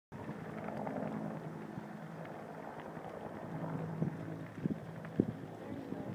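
A steady low engine drone with wind noise on the microphone.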